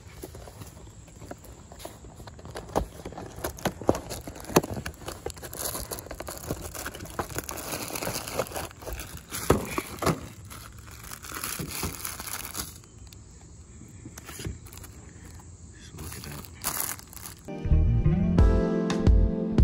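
Cardboard filter box and the new cabin air filter's plastic wrapping being handled, giving scattered crinkles, rustles and clicks. Background guitar music comes in shortly before the end.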